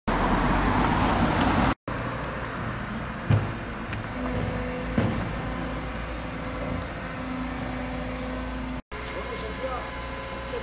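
A loud, even rushing noise for about the first two seconds cuts off. Then a Liebherr wheeled excavator's diesel engine runs steadily at a work site, with two sharp metallic knocks about three and five seconds in.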